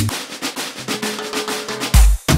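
Guaracha dance track in a short break: the bass drum drops out and a quick run of snare-like drum hits fills the gap, with a held synth note coming in about halfway. The heavy kick returns at the very end.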